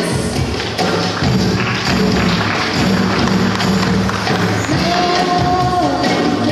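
Live band music with a steady bass line and busy tambourine-like percussion; a woman's voice comes in holding one long sung note near the end.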